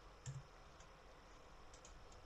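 Near silence with a few faint computer keyboard key clicks, one early and a couple near the end.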